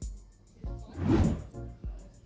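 Background music: separate pitched notes with a brief swell about a second in.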